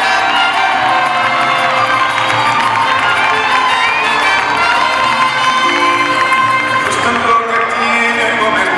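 A large audience cheering and screaming, full of shrill individual cries, with a mariachi band with trumpets playing underneath.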